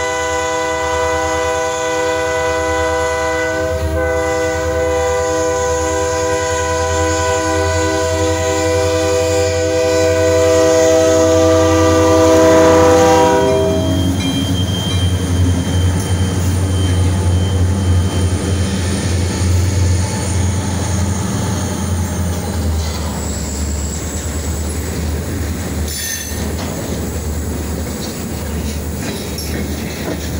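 EMD SD40-2 diesel locomotives sounding a multi-tone chord horn for a grade crossing as they approach, growing louder until the horn stops about 14 seconds in. The locomotives' diesel engines then rumble past close by, followed by freight cars rolling over the rails with clattering wheels and a thin, high wheel squeal.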